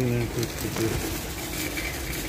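A voice trails off at the start, then a few faint murmurs over steady, low outdoor background noise.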